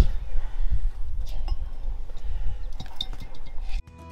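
Light, scattered metallic clinks and taps as the worn-out parts of a tractor's failed wheel bearing and hub are handled, over a low rumble. The sound cuts off abruptly just before the end.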